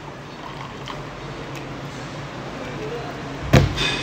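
Water poured from a plastic bottle into a shaker cup with ice in it, a steady pouring sound. About three and a half seconds in, one loud sharp thump.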